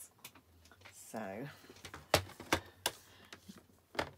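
Three sharp plastic clacks in quick succession about two seconds in, then another near the end: a paper trimmer being set down on the work mat and card stock butted up against it.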